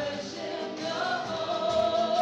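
Live worship song: women singing together with acoustic guitar and piano. A long note is held through the second half.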